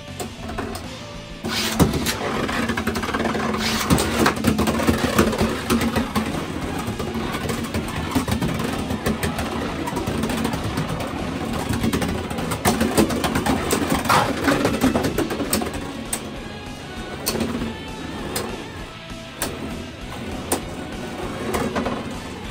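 Beyblade X spinning tops whirring on a plastic stadium floor and clacking against each other, louder from about a second and a half in, with background music.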